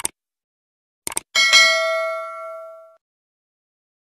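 Subscribe-button sound effect: a mouse click, then two quick clicks about a second in, followed by a bright notification-bell ding of several pitches that rings out and fades over about a second and a half.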